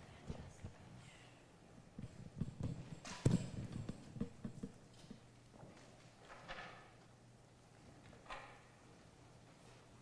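Footsteps and shuffling of a choir's singers moving into new positions on a hard floor, a scatter of irregular low knocks from shoes and folders, with one louder knock about three seconds in. The movement thins out in the second half, leaving a few faint rustles.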